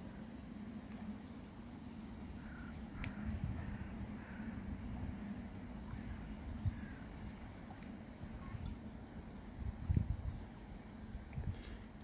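Faint outdoor ambience beside a lake: an uneven low rumble with a few faint, short distant bird calls.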